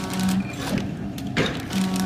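Vertical form-fill-seal powder packing machine running its bag cycle with the cutter blades just set to cut through the film: a short hum and sharp clacks repeating about every two seconds.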